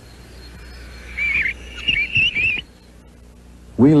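A bird calling: a quick run of about four short whistled chirps in the middle, over a faint low hum.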